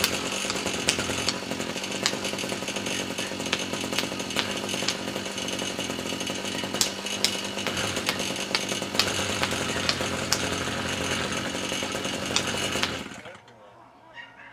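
Small two-stroke string trimmer engine running steadily, with repeated sharp clicks and knocks as an inline spark plug test light is struck against concrete. The engine cuts out suddenly about a second before the end.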